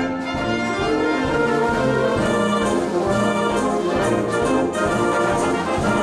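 Concert wind band playing: brass, horns and woodwinds together in held chords, swelling louder about a second in.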